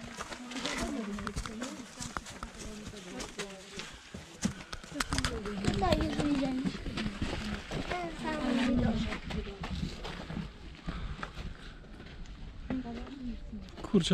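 Footsteps crunching on a stony, leaf-covered path, mixed with the indistinct voices of people talking nearby. A low rumble of wind on the microphone comes in around the middle.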